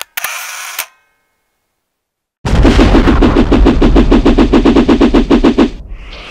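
Logo-ident sound effect: a brief burst at the start, then, after a second of silence, about three seconds of loud, rapid rattling pulses over a deep rumble, like machine-gun fire, cutting off abruptly shortly before the end.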